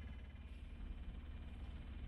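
Faint steady low hum under a weak hiss, with no distinct events.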